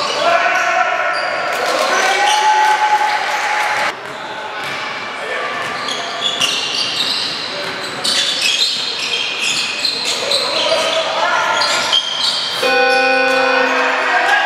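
Indoor basketball game on a hardwood court: the ball bouncing, sneakers squeaking and voices echoing in the gym. Near the end a steady buzzer tone starts as the game clock runs out, marking the end of the period.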